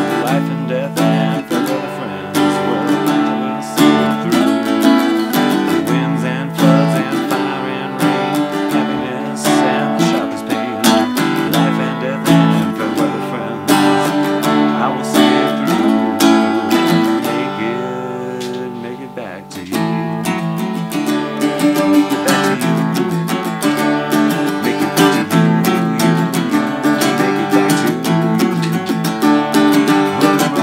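Acoustic guitar strummed in a folk-style song. The music drops away briefly a little after two-thirds of the way through, then comes back in fully.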